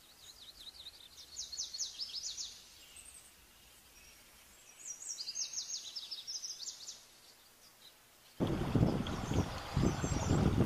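Plumbeous water redstart song: two rapid, high, scratchy phrases of quick downward notes, a couple of seconds apart. Over a second before the end a loud rushing noise starts suddenly and covers the rest.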